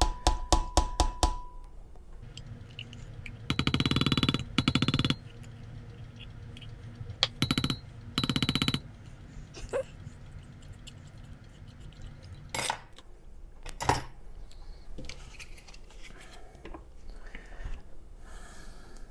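Rubber spatula scraping sweetened condensed milk out of a metal can: quick taps at the start, then several short bursts of fast rasping scrapes. Two sharp knocks come a little past the middle.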